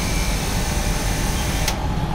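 A 3 HP BTALI high-pressure washer runs steadily with a mechanical hum and a high spray hiss. The hiss cuts off suddenly near the end.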